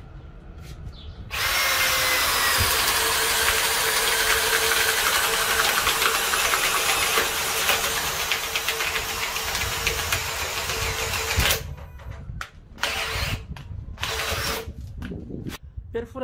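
Cordless drill boring a large hole in wood with a flat spade-type bit. The motor runs under load at a steady pitch from about a second in, cuts off about three-quarters of the way through, and is followed by several short bursts as the trigger is pulled again.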